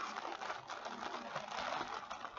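Kit packaging being handled and packed away: a quick, irregular run of small clicks and rustles.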